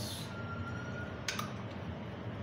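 Countertop handling while sauce is being spread on burger buns: a brief swish at the start, then one sharp click a little past a second in, most likely the sauce bottle being put down, over a steady low room hum.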